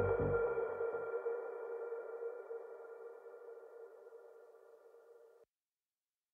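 The closing moments of a progressive house track: with the beat gone, a held electronic chord slowly fades away and stops about five seconds in, leaving silence.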